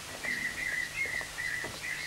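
Bird chirping: a quick string of short, high chirps at a nearly even pitch.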